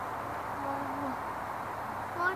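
A child's soft, brief voiced note, one low held sound about half a second long, over steady outdoor background hiss.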